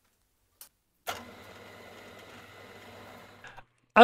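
A steady electric motor hum that starts with a click about a second in and stops abruptly about half a second before the end, followed by a couple of small clicks.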